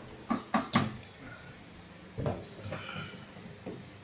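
Three quick, sharp knocks in the first second, then another knock about two seconds in and some lighter clatter: hard objects being handled and knocked together during workshop work.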